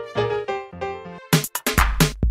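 Song intro: electric piano chords fade out, then after a brief gap, a little past halfway, drums and bass come in with a steady beat.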